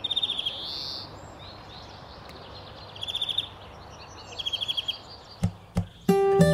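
Small bird calling: three short runs of rapid, evenly repeated high notes, one at the start, one about three seconds in and one near the end. There is a rising-and-falling high note about half a second in, all over a steady outdoor hiss. Two soft thumps come shortly before the end.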